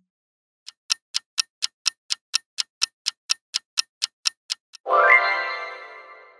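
Clock-ticking countdown sound effect, about four sharp ticks a second for some four seconds. It is followed near the end by a bright chime-like reveal sting with a short rising tone that rings out and fades.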